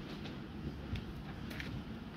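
Judogi cloth rustling and bodies shifting on tatami mats, with a few soft brushes, over a steady low rumble.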